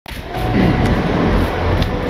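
Steady rumble of road traffic on a wet city bridge.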